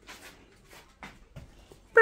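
A few faint, short scuffles and rustles from a dog playing tug with a plush toy.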